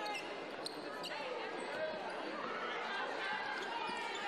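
Basketball being dribbled on a hardwood court, a few sharp bounces over the steady murmur of voices in an arena.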